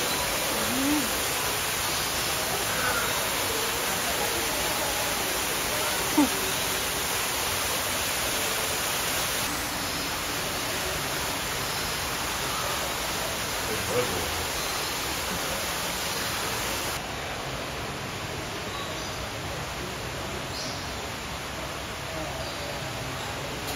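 Steady rushing noise, like running water, filling a large indoor aviary, with a faint murmur of voices and scattered short bird calls. Two brief sharp sounds stand out, about six seconds in and again near fourteen seconds.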